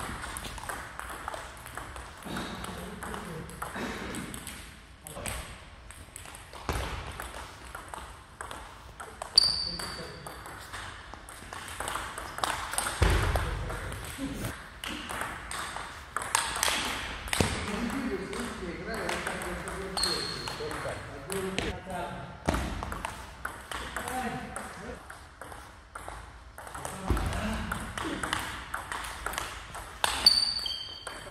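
Table tennis rallies: the plastic ball clicking back and forth off paddles and table in quick, irregular exchanges, with voices between points.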